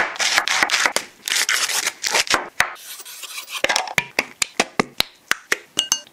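Knife cutting through a raw cabbage on a wooden board: crisp crunching and cracking of the leaves. About halfway through, the crunching gives way to a run of sharp, quick taps, roughly three a second.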